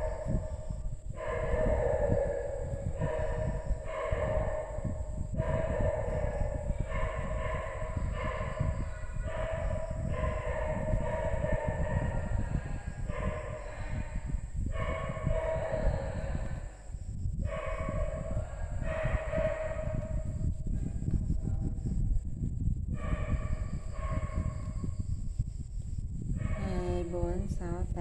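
A woman's voice slowly counting crochet stitches aloud, one drawn-out number about every two seconds, over a steady low background rumble.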